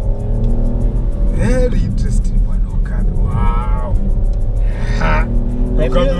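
Peugeot 308 GT Line driven hard on a track, heard from inside the cabin as a steady engine and road rumble. Background music plays over it, with short bits of voice.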